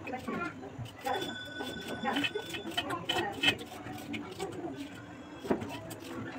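Indistinct voices talking in the background, with short light clicks and knocks of kitchen work.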